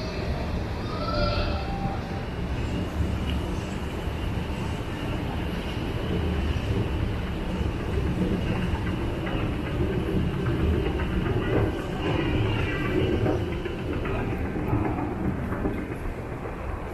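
A train running through the railway station: a steady low rumble, a little louder through the middle of the passage.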